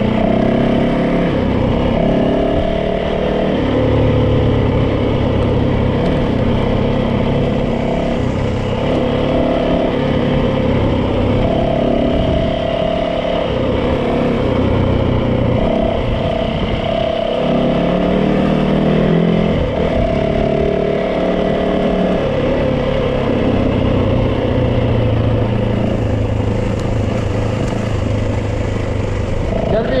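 Yamaha dirt bike's single-cylinder engine running as the bike is ridden along a dirt trail, its pitch rising and falling in steps with throttle and gear changes.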